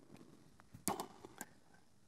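A few faint, short clicks a little under a second in, then near quiet.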